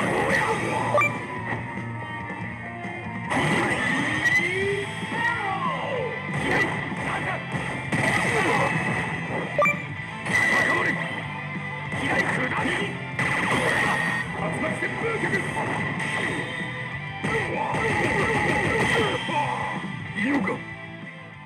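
Game audio from a Street Fighter V pachislot machine in its battle mode: background music with repeated punch and impact hit effects and shouted character voices.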